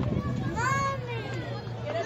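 Children's voices calling out as they play, indistinct, with a steady low hum underneath.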